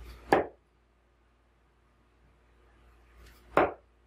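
Two steel-tip darts, Red Dragon Peter Wright Snakebite 3s, striking a bristle dartboard about three seconds apart. Each one lands with a single sharp thud.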